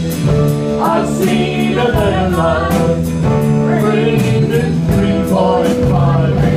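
Live band playing a song, with drum kit, electric bass and keyboards under sung vocals; a woman and a man sing together toward the end.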